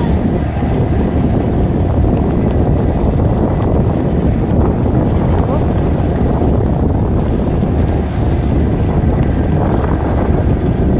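Steady rumble of a motorboat underway, with wind buffeting the microphone.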